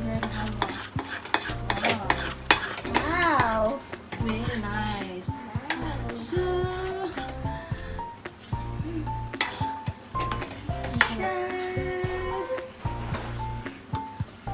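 Metal ladle stirring and scraping thick bread halwa in a metal kadai, with many short clicks and scrapes against the pan and a light sizzle from the cooking, under background music.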